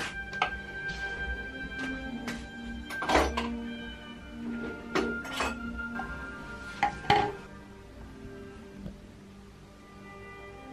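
Teaware being handled: a series of clinks and knocks, glass and ceramic set down and touched, the loudest about three and seven seconds in. Soft instrumental background music plays under it.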